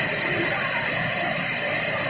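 Muddy floodwater rushing down a gully in a steady, unbroken rush of water noise, heard through a phone microphone.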